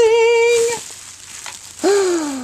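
A woman's voice: a held, high "ooh" of delight lasting under a second, then, near the end, an "oh" that falls in pitch.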